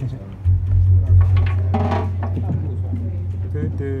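A loud, steady low hum from the stage comes in suddenly about half a second in and holds, with scattered voices and a few short instrument notes over it as the band gets ready to play.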